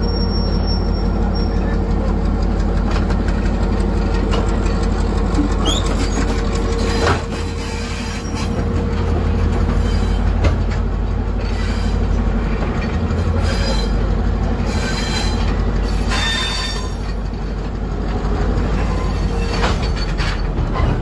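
Passenger train coach rolling slowly out of a station, heard from an open window: a steady rumble of the wheels on the rails, with intermittent high wheel squeal, mostly in the second half, and a single knock about seven seconds in.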